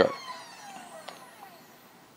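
Vixen AXD mount's drive motors whining at the end of a GoTo slew, their pitch falling as the mount slows onto its target, fading out, with a faint click about a second in.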